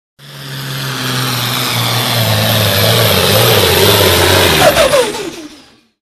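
Light limited super stock pulling tractor's diesel engine at full throttle, growing steadily louder, then dropping in pitch near the end and fading out quickly.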